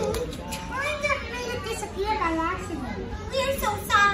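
High-pitched voices talking in short phrases that swoop up and down in pitch, like children's or character voices.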